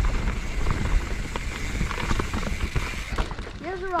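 Mountain bike rolling down a dirt forest trail, with steady wind rumble on the camera microphone and scattered clicks and rattles from the bike over the rough ground.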